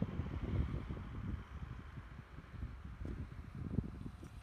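Low, uneven rumble of wind and handling noise on a handheld microphone as the camera is carried, with a few soft low thuds.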